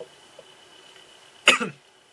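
A man's single short cough about one and a half seconds in, after a quiet pause with a faint steady high-pitched whine in the background.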